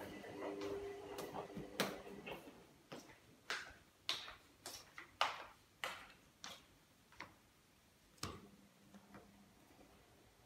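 Footsteps on a hard floor, about one step every 0.6 s, each a short sharp click, fading away near the end. A faint hum dies away in the first second.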